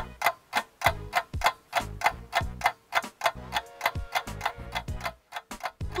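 Clock-like ticking, about five ticks a second, over low bass notes: a music or sound-effect cue.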